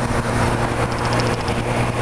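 Motorcycle engine running steadily while cruising in sixth gear at about 75 km/h, mixed with steady wind and road noise.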